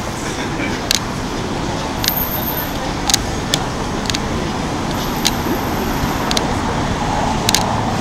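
Steady city street traffic noise with cars passing at a crosswalk, mixed with the murmur of passers-by, and a few sharp clicks at irregular intervals.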